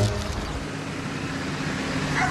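Steady background noise with a faint low hum underneath.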